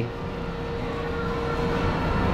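Steady low mechanical rumble with a constant faint hum, slowly growing louder: background machinery or ventilation noise in a workshop.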